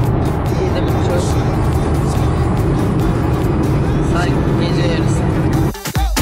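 Music with singing playing over a car's stereo, with the steady road and engine noise of the moving car in the cabin underneath. Near the end it cuts out briefly and louder dance music with a strong beat starts.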